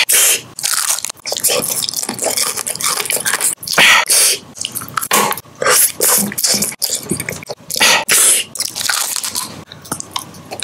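Close-miked biting and chewing of candy: a quick series of crunchy bites and chewing sounds with short gaps between them.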